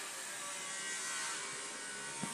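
Steady background hiss with a faint hum, even throughout, with no distinct event standing out.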